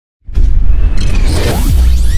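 Intro sound effect for an animated title: a whoosh over a loud, deep bass rumble, starting suddenly about a quarter second in.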